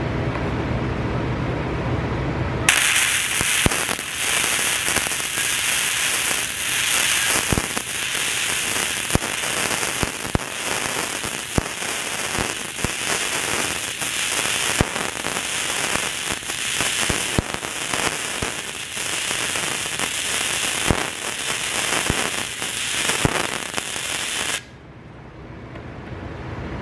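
Flux-core wire welding arc from a Harbor Freight Titanium Easy Flux 125 welder, laying a bead in small circular weaves. A continuous hiss full of quick pops starts abruptly about three seconds in and cuts off abruptly about a second and a half before the end.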